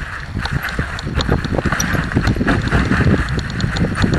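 Mountain bike clattering down a rocky, leaf-strewn singletrack: quick, irregular knocks and rattles as the bike bounces over stones, over a steady noisy rush of the tyres rolling through dry leaves and gravel.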